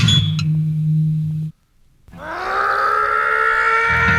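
Gap between two tracks on a power-violence punk record ripped from vinyl: a low held note rings out and cuts off about a second and a half in, and after a short silence the next track opens with a sustained note that swells up and bends slightly upward in pitch.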